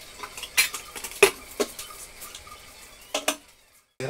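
Spatula tapping and scraping against a frying pan while stirring a sauce: a handful of sharp knocks, the loudest a little over a second in, with two more near the end before the sound cuts off abruptly.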